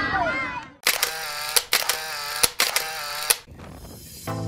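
Camera-shutter-style clicking sound effect: a series of sharp mechanical clicks, less than a second apart, with a buzzing whir between them. Children's voices fade out just before it.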